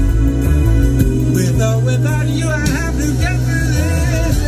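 A song with a sung vocal and very heavy deep bass, played at high volume through Augspurger studio speakers. The bass reaches down to about 30 Hz at around 100 dB.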